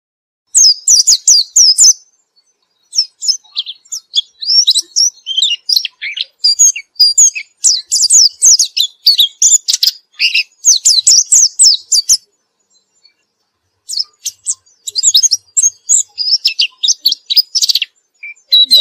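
Caged white-eye (pleci) singing in full song, fast high twittering phrases strung together almost without a break, pausing briefly about two seconds in and again for a moment between twelve and fourteen seconds.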